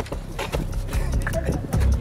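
Several people's shoes hitting concrete paving in quick, irregular footsteps as they walk off briskly.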